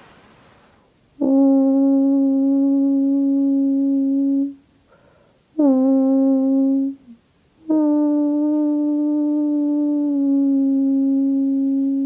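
A person toning: three long sustained vocal notes held at the same steady pitch, each starting sharply, with breaths taken between them. The second note is short and sags slightly at its end; the last is the longest, about four and a half seconds.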